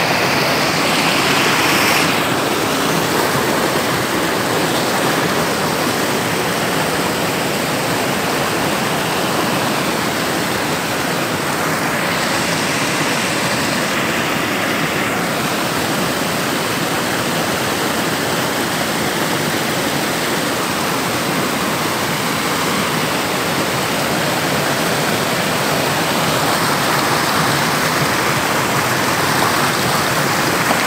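Small hillside stream cascading over rocks: a steady, loud rush of water close by.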